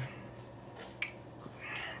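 A quiet pause with a faint steady low hum, broken by one short sharp click about a second in and a brief breathy rush near the end.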